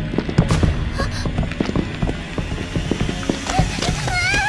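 Dramatic soundtrack music under a rapid series of knocks and impacts from action sound effects, with a person's cry starting near the end.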